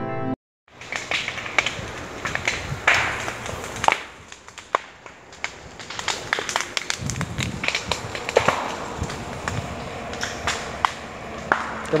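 Dry brush crackling and snapping: many sharp, irregular cracks over a steady rustling hiss.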